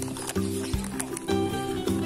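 Background music: a melody of held notes that change every fraction of a second.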